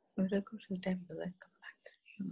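A person speaking quietly, the words too soft to make out.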